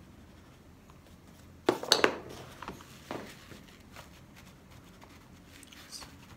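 Painting tools handled on a table: a brief clatter of sharp knocks about two seconds in, then a few light taps as colour is lifted off the wet paper with a crumpled tissue.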